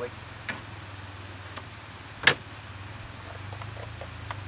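A knife and a small jar of crushed garlic being handled at a table: a few light taps and one sharp click a little over two seconds in. A steady low hum runs underneath.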